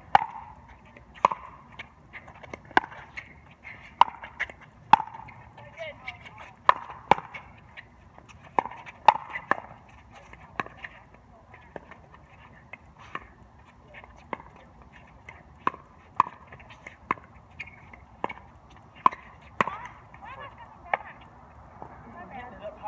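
Pickleball paddles striking a hard plastic pickleball in a rally: sharp, hollow pops every second or so, some of them loud, with a short pause about halfway through.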